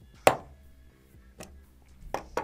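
Metal snap ring clicking into place on the 8mm shaft of a Spektrum Firma 1250Kv brushless motor: one sharp click about a quarter second in, then a softer click about a second later.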